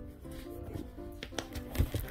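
Quiet background music with sustained, stepping notes. A few short handling clicks and a soft thump near the end come as a spiral notebook's page is turned over.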